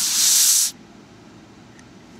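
A short blast of air hissing out of a thin straw onto an NTC thermistor to cool it, cutting off sharply under a second in.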